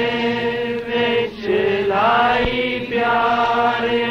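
Punjabi devotional hymn (bhajan) sung as a chant, with long drawn-out held notes; the pitch dips and rises once near the middle.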